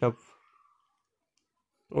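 A man's voice finishing a word, then near silence, with speech starting again near the end.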